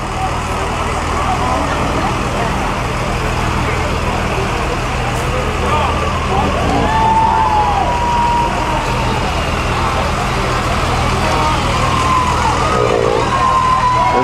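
Idling school bus engines giving a steady low rumble, with a few voices over it.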